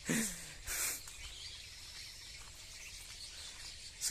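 Birdsong: many birds chirping and calling faintly over a steady outdoor background hush, with a short hiss of noise a little under a second in.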